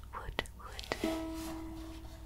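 Wooden UMA ukulele: two soft clicks from handling, then a single string plucked about a second in, its note ringing on and slowly fading.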